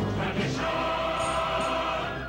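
Music with a choir singing; from about half a second in, the voices hold a long chord.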